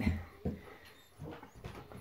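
Faint, high-pitched whimpering from a German Shepherd, with a soft thump about half a second in.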